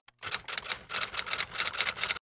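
Typewriter keys striking in a quick, even run, starting about a quarter second in: a typing sound effect laid under a caption as it is typed out on screen.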